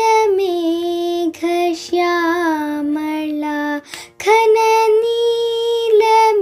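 A young girl singing unaccompanied in Carnatic style, in raga Behag: a held high note sliding down into lower, ornamented notes with short breaths between phrases. After a brief pause about four seconds in, she holds the high note again.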